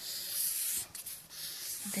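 Felt-tip marker drawing on paper in two long strokes, with a short break just under a second in.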